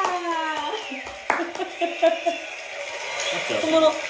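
A woman laughing and talking between songs, her voice sliding down in pitch at the start, then broken chatter.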